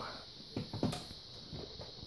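Handling noise: a few light knocks and rustles as parts are picked up and moved, over a faint steady high-pitched hiss.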